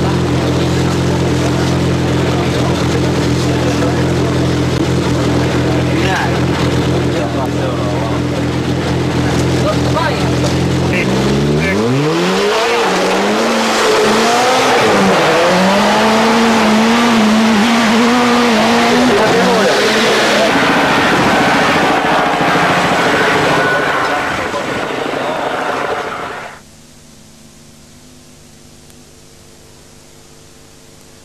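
A Datsun rally car's engine idling steadily, then revved hard about twelve seconds in as the car pulls away. Its pitch rises and wavers as it accelerates. The sound cuts off suddenly a few seconds before the end, leaving only a faint hum.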